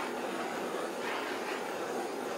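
Handheld butane torch burning with a steady hiss as its flame is played over a layer of encaustic wax on a panel to heat it.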